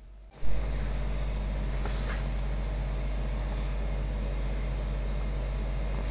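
A steady low electrical hum with a hiss over it. It starts abruptly with a short click about half a second in and holds at an even level.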